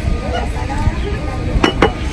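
Two quick, sharp clinks close together near the end, from a glass jar of iced drink, over a steady hum of voices in the background.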